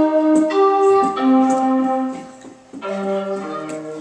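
Digital piano played with both hands: held chords under a simple melody, with a brief lull about two and a half seconds in before a new chord starts.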